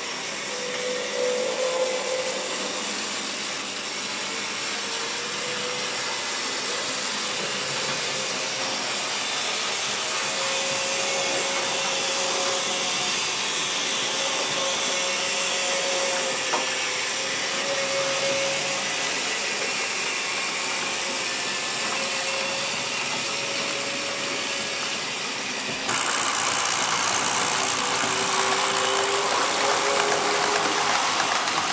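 TT-scale model trains running on the layout: a steady rolling hiss of wheels on track with a faint wavering motor whine. It gets louder about 26 seconds in.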